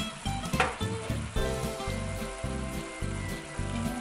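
Ground beef and tomato sauce sizzling gently in a frying pan on a low gas flame, under background music with a steady beat.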